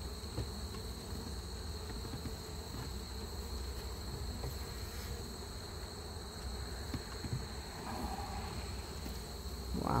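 Russian honey bees buzzing around an opened hive during a honey harvest, a steady low drone, over a thin steady high trill.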